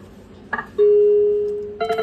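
Video slot machine's electronic sounds: a short reel-stop beep about half a second in, then one loud held tone that slowly fades, and a winning jingle starting near the end as a line of cherries pays out.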